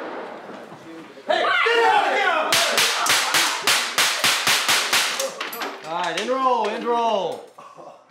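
A rapid string of about a dozen shots from a training gun, four or five a second, fired at people in shock vests during a mock home-invasion attack. Frantic shouting and screaming come before and after the shots.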